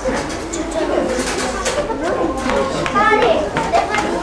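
Many children's voices chattering over one another, with one higher child's voice standing out about three seconds in.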